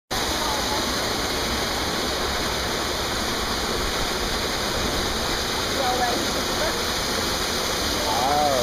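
Steady, unbroken rush of water pouring into a pool, with faint voices near the end.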